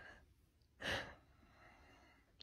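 A single short sigh, a breath pushed out, about a second in; otherwise the room is quiet.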